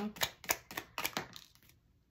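Tarot cards being drawn from the deck and handled: a quick run of sharp card snaps and clicks, about four a second, dying away after a second and a half.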